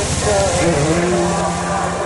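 A small engine running steadily with a fast low pulsing, with people's voices over it.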